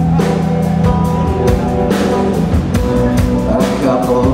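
Live blues band playing an instrumental passage: electric guitar and keyboard over a drum kit keeping a steady beat.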